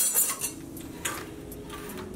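A large metal juice can being handled and set down on a granite countertop: a sharp knock right at the start, then a few lighter taps about a second in.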